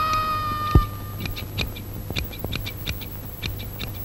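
Barber's scissors snipping hair in short, irregular snips, several a second. In the first second a held music note fades out and there is a single low thump.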